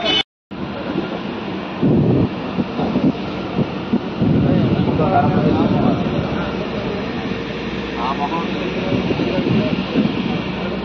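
A river passenger boat's engine running with a steady drone, with wind on the microphone and short bits of voices aboard. A brief gap of silence comes just after the start.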